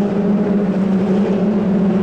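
Formula 2 stock car engines running at racing speed as the cars lap the track, a steady drone.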